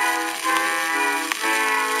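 Instrumental close of a 1910 acoustic-era record: the band accompaniment plays held notes that change every third to half second once the singing has stopped. There is a sharp click just past the middle, over a steady surface hiss.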